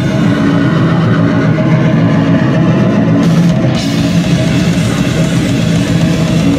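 Hardcore punk band playing live: loud, dense electric guitars over a drum kit with cymbals.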